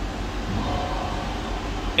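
Steady low background hum, with a faint steady tone in the middle.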